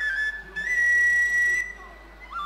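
A flute playing a melody. A couple of short notes at the start are followed by one long high note, held for about a second, that breaks off shortly before the end.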